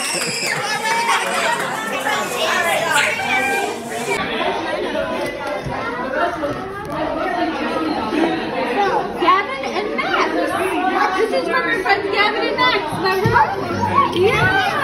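Many children and adults talking at once in a large room: overlapping party chatter.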